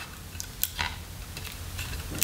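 Screwdriver prying at a wooden handle scale on a steel knife tang, working the epoxy-bonded scale loose: faint metal scrapes with a couple of short clicks a little past the first half-second.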